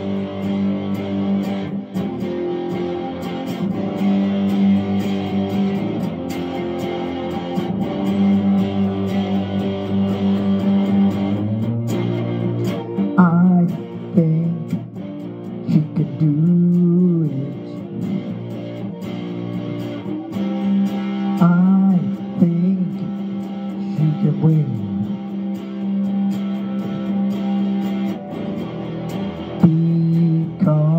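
Electric guitar played through a small practice amplifier: sustained strummed chords ring out, then from about twelve seconds in a looser passage of notes gliding in pitch, before steady chords return.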